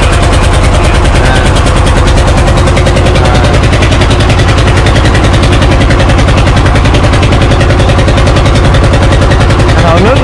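Wooden river fishing boat's engine running steadily under way, very loud, with a fast, even chugging of firing pulses.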